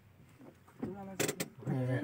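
Low steady car-cabin hum, then voices talking from about a second in, with a couple of sharp clicks in the middle.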